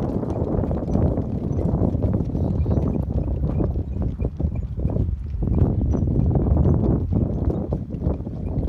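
Footsteps on rocky ground, a run of uneven knocks, under wind on the microphone.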